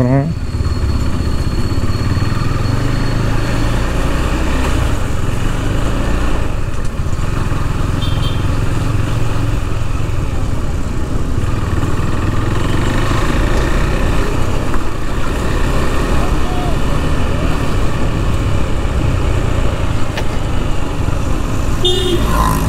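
KTM 390's single-cylinder engine running steadily while the motorcycle is ridden, a continuous low rumble mixed with road and wind noise.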